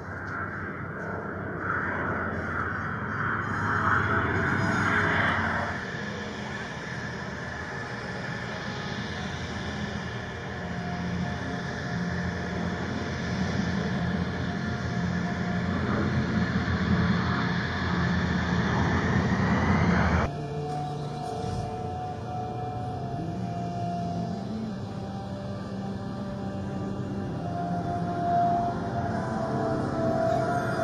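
Aircraft engine noise from a formation of an F-22 Raptor jet and WWII piston-engine fighters including a P-38 Lightning passing overhead: a steady drone with a whine that rises until about twenty seconds in. There it cuts off abruptly and music with long held tones takes over.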